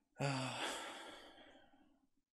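A man's long sigh: a brief voiced start, then a breathy exhale that fades away over about a second and a half.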